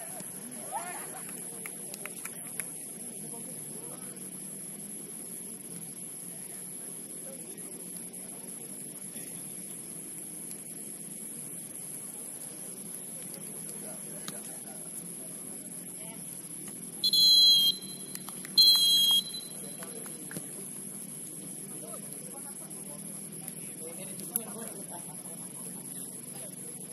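Referee's pea whistle blown twice, two short shrill blasts about a second and a half apart, over faint distant voices on the pitch.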